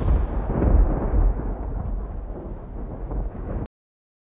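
A deep rumbling boom sound effect, heaviest in the bass, dying away slowly and then cutting off suddenly near the end.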